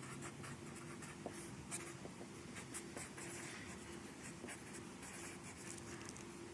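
A black marker writing on a sheet of paper: faint, irregular strokes as a line of text is written out.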